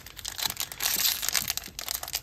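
Plastic trading-card pack wrapper crinkling and rustling in the hands, in a dense crackle that is busiest through the first half and thins out near the end.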